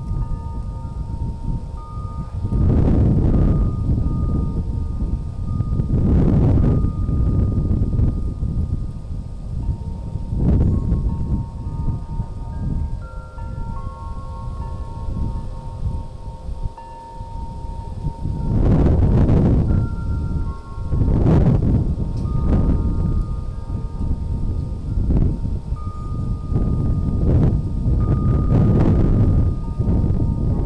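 Wind chimes ringing: long, clear tones at a few different pitches that overlap, hold and fade. Repeated gusts of wind buffet the microphone with heavy low rumbles every few seconds.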